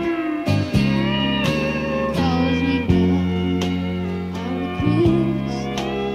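Live country band playing a slow waltz instrumental passage: steel guitar bending and sliding notes over sustained bass and guitar chords, with no singing.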